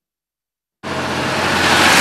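Silence for almost a second, then a sudden cut-in of road noise from an articulated truck with a flatbed trailer passing close by: engine and tyre noise that grows louder.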